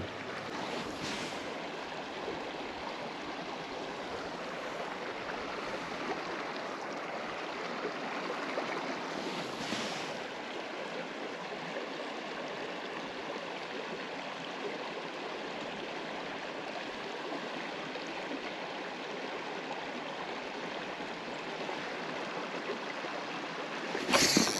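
Small spring creek running: a steady, even rush of water, with two brief swishes, one about a second in and one near ten seconds.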